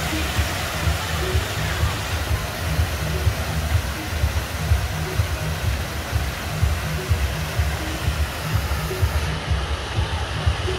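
Water from an illuminated fountain splashing steadily, its jets falling into the basin and cascading over the rim, with an uneven low pulsing underneath.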